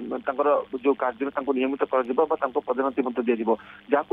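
Speech only: a man talking steadily in Odia, heard over a narrow phone line.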